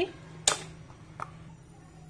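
A sharp click about half a second in, then a fainter click a little past a second, over a low steady hum.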